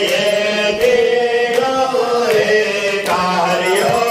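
Hindu devotional chanting, a sung aarti hymn held in long, wavering notes, with a few sharp clicks among it.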